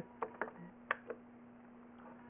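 Four faint clicks and taps of handling in the first second or so, over a steady low hum.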